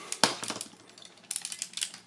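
Small plastic clicks and taps from an action figure's parts being handled: a sharp click about a quarter second in, another around half a second, then a run of quicker clicks in the second half.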